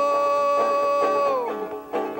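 A man sings one long, high, wordless note held steady, which falls away about a second and a half in. It is followed by a short dip and fresh plucked-string notes near the end.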